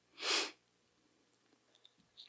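A man's single short, sharp breath in close to a microphone, a quick sniff lasting about a third of a second just after the start.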